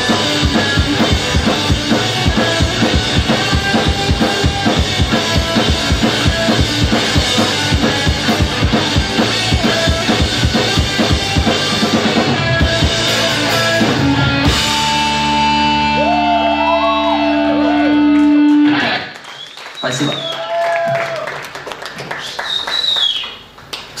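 Ska-punk band playing live with a full drum kit and electric guitars, the song ending about 14 seconds in on a held final chord that rings for a few seconds. Then the audience claps and whistles briefly, and a man says thanks.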